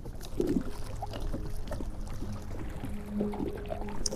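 Small waves lapping and ticking against a small boat's hull on a lake, with a faint steady low hum coming up in the second half.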